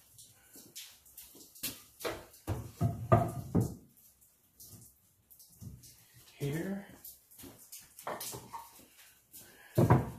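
Wooden 2x4 boards knocking and clunking against each other and a wooden workbench as they are handled and set in place, with a cluster of knocks two to four seconds in and more near the end.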